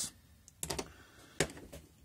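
Light clicks and a knock as a small ink bottle and its black cap are handled and set down on the table: a quick cluster of clicks just over half a second in, then one sharper click near one and a half seconds.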